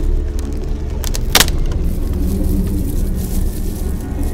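Low, steady rumbling drone, with one sharp snap about a second and a half in.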